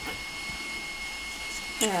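Electric stand mixer running steadily on high speed in the background, a constant motor hum with a thin high whine, as it beats eggs and sugar toward a thick, tripled batter.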